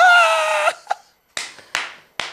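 Men laughing hard: a high-pitched, drawn-out laugh for most of the first second, then two sharp hand claps about a second apart as the laughter goes on.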